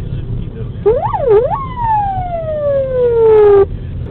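Police car siren on a pursuing patrol car, heard from inside its cabin. About a second in it gives two quick rising-and-falling wails, then one long tone that slides steadily down in pitch and cuts off suddenly near the end, over the low rumble of the moving car.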